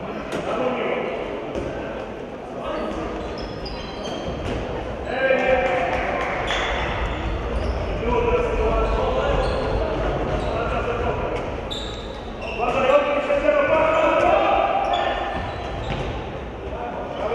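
Handball game in a reverberant sports hall: the ball bounces on the wooden floor amid short sharp knocks, with raised voices shouting. The voices swell about five seconds in and again around thirteen seconds.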